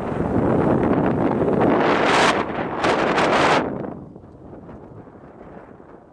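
Wind buffeting the microphone inside a moving car, with a few harsher gusts. The noise falls away sharply a little before four seconds in, leaving a quieter rush of travel noise.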